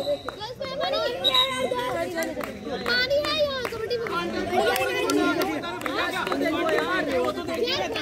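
Many young male voices shouting and calling over one another, a continuous crowd of overlapping chatter from players in a kho kho game.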